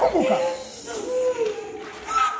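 A woman wailing as she is prayed over for deliverance: a few quick falling cries, then one long wavering note held for about a second.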